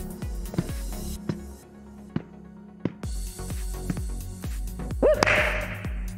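Sharp slaps of hands striking a small ball and the ball bouncing on a wooden gym floor during a rally, over background music with a steady beat.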